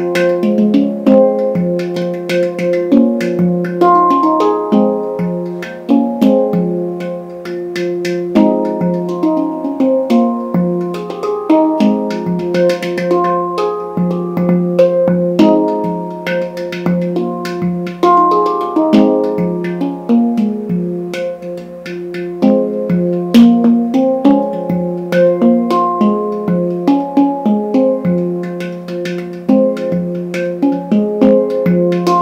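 SPB pantam, a steel handpan, played with the fingers: a dense, rhythmic run of ringing notes and quick taps over a sustained low note.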